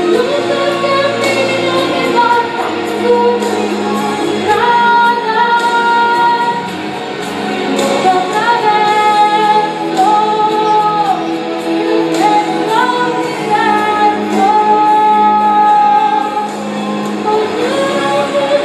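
A song: a female voice singing long held notes that slide from one pitch to the next, over a steady instrumental accompaniment.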